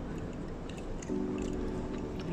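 A man humming a steady, closed-mouth "mmm" of approval while eating, starting about a second in and held for about a second.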